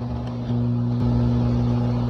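A steady low hum with no speech over it, growing slightly louder about half a second in.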